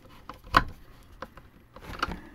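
Screwdriver turning a screw into the plastic end cap of a hand-held vacuum's brush-roll housing: one sharp click about half a second in, then a few fainter clicks and a short scrape.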